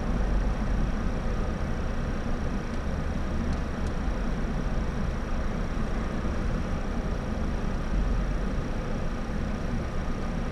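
Car engine idling steadily at a standstill, heard as an even low rumble, with a faint steady high-pitched whine above it.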